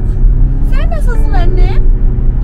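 Steady low road and engine rumble inside a moving car's cabin, with a short vocal sound that rises and falls in pitch around the middle.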